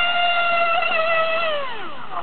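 RC model speedboat's motor running flat out, a steady high-pitched whine whose pitch drops steeply near the end.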